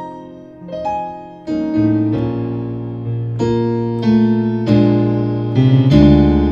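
Piano playing a slow run of sustained, altered gospel-style chords with both hands, a new chord struck about every half second to a second and each ringing and fading before the next. It is part of a progression that passes through all twelve notes of the scale.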